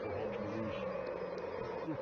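Steady drone of a large football stadium crowd, thousands of fans singing and shouting together.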